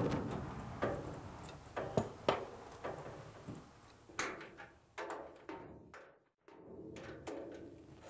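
Irregular knocks and clanks of metal parts, roughly one every half second to second, as the dumbwaiter car is fitted onto its drive trolley and its bolts are started. The sound drops out briefly about three-quarters of the way through.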